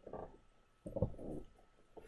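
A man's faint, short vocal sound, a soft murmur about a second in, in a pause between his sentences.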